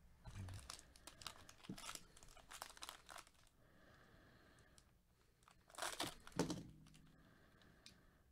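Foil wrapper of a trading-card pack crinkling as it is handled, in short sharp crackles over the first three seconds or so. A louder crackle comes about six seconds in.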